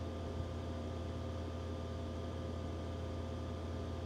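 Steady low hum with a faint hiss: the room tone of a church hall, with no other event.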